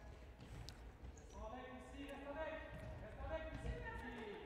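Faint sports-hall ambience: distant voices calling across the echoing hall from about a second in, over a low rumble, with occasional soft thuds of the futsal ball and shoes on the wooden floor.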